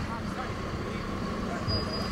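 Steady outdoor city background: a low, even rumble of road traffic with no distinct events.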